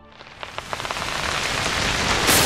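Dramatic sound effect: a hiss-like rush of noise that swells steadily from near quiet, with a few faint clicks in the first second.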